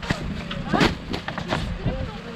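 Old tyres being thrown down on a plastic-covered silage clamp, landing with several dull thuds, the loudest a little under a second in.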